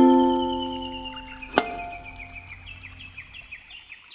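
The last chord of a ukulele ringing out and fading away, with a sharp click about one and a half seconds in. Behind it, a bird calls faintly in a run of short high notes that step upward.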